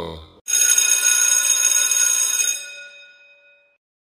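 A single bell-like metallic ring starts suddenly about half a second in. Its many high ringing tones die away over about three seconds.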